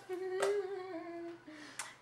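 A woman's short, closed-mouth laugh, hummed on one low note that slowly sinks and fades, with a couple of faint clicks.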